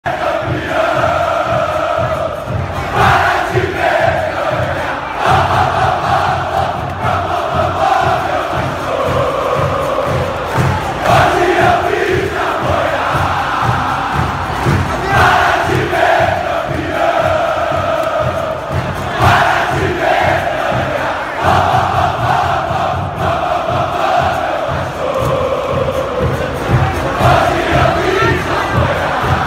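A large stadium crowd of football supporters singing a chant together, with a steady low beat underneath.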